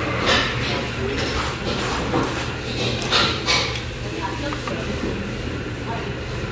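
Restaurant room noise: a steady low hum with faint background voices and a few brief clatters.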